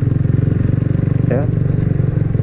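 Kawasaki W175's air-cooled single-cylinder engine running at a steady cruising speed on the move, with an even, unchanging exhaust beat.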